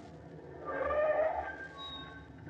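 Radio-drama sound effect of a taxicab pulling up and stopping. The engine hum fades, then a short swell of sound with a few thin held high tones comes about half a second in, as the car comes to a halt.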